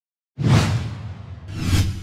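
Two whoosh sound effects of an animated logo intro: the first starts suddenly about half a second in and fades, the second swells to a peak near the end, over a low hum.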